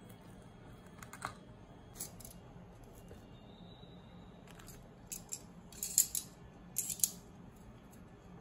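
Scattered short, sharp clicks and crinkles from metal kitchen tongs and plastic handling bread snacks in metal baking trays. The loudest bunches come about six and seven seconds in.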